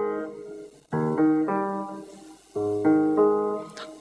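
Grand piano playing a left-hand accompaniment alone: low broken-chord figures struck about a second in and again about two and a half seconds in, each group ringing out and fading.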